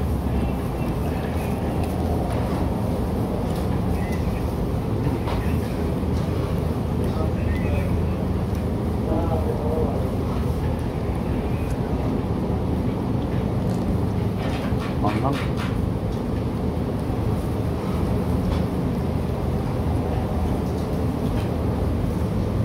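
Steady low hum of background room noise, with faint voices murmuring in the background and a few light clicks about two-thirds of the way through.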